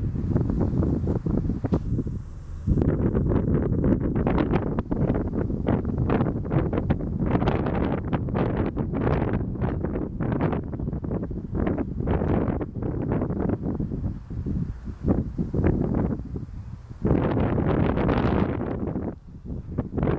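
Wind buffeting the camera's microphone: a loud, gusty low rumble that drops briefly about two seconds in and again near the end.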